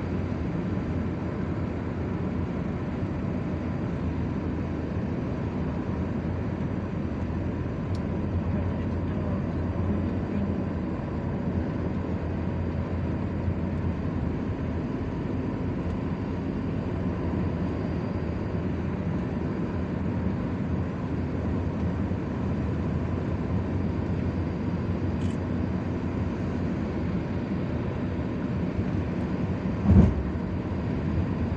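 Steady low rumble of road and engine noise inside a car cruising along a highway, tyres running on asphalt. A short thump right at the end.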